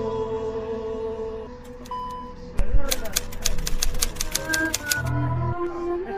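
Intro music with held drone tones, then a typewriter sound effect: a low thud about two and a half seconds in, followed by a rapid run of key clicks lasting about two seconds.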